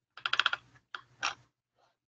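Clicks from a computer's input devices, recorded on the narrator's microphone: a quick run of about eight clicks, then two or three single clicks.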